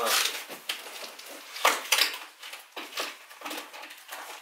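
Cardboard shipping box being handled and opened by hand: rustling and scraping of cardboard, with two sharp, louder snaps about halfway through.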